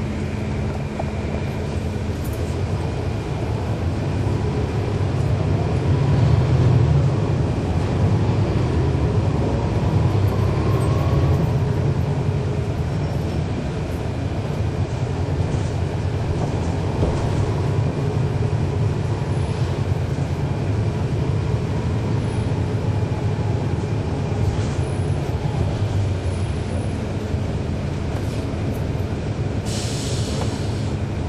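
Cummins ISL9 diesel engine of a 2012 NABI 40-SFW transit bus running under way. It builds up louder over the first several seconds as the bus pulls, then runs on steadily. A steady low hum is heard at the start and again near the end.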